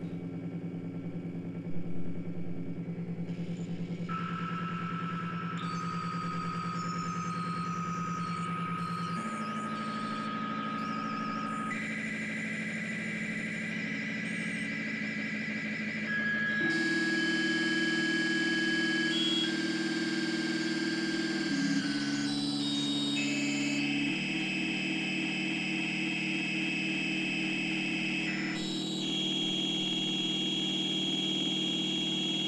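Circuit-bent electronic instruments playing layered, sustained electronic drones and tones that step to new pitches every few seconds, with warbling, glitchy high patterns above them. A short loud blip about two seconds in, and the texture grows fuller and louder about halfway through.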